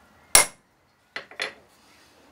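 A hammer strikes a cold chisel held on the milling vise's swivel base once, a single sharp metallic blow that marks the 90-degree line. Two lighter clicks follow a little under a second later.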